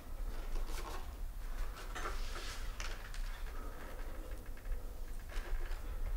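Quiet room tone: a steady low hum with a few faint, soft rustles and small clicks.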